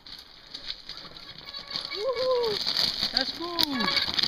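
Two drawn-out, wordless vocal calls from a rider, the first arching up and down and the second falling in pitch. Under them is a steady rattling hiss with small clicks from mountain bikes rolling over loose scree stones.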